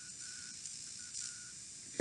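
A brief pause in speech with only faint background hiss, broken by short faint high tones that come and go.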